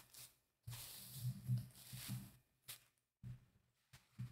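Faint handling noise: rustling with a low rumble for about a second and a half, then a few short, soft knocks, as fabric and the layout are shifted by hand.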